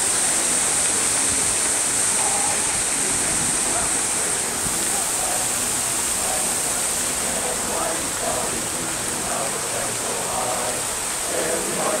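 Steady rushing splash of the memorial's fountains under the chatter of a crowd; a men's barbershop chorus starts singing right at the end.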